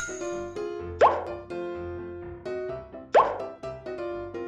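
Light children's background music with a stepping melody, cut by two short upward-sliding cartoon 'plop' sound effects, one about a second in and another about three seconds in.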